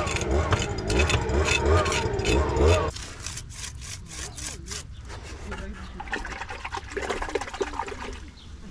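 Small steel margin trowel scraping over concrete, a run of short scraping strokes, as fresh concrete is worked along a door threshold.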